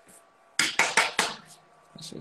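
A quick run of about six small hard clicks and clinks as a nail-art brush is handled and cleaned against its hard container.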